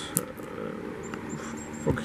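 Light handling sounds of a cardboard product box: a few soft clicks and rustles.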